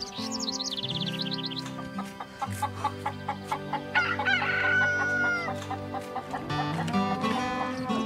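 A rooster crowing once, a long falling call about four seconds in, with chickens clucking around it, over background music.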